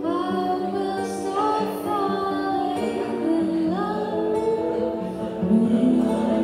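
Live music: a woman singing to acoustic guitar accompaniment, with long held notes that slide between pitches.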